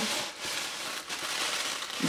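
Paper or plastic packaging crinkling and rustling as it is handled, in an irregular stream of crackles.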